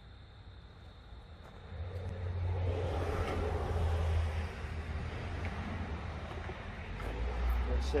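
A road vehicle going by: a low rumble and rushing noise swell about two seconds in and slowly ease off, and a second low rumble rises near the end.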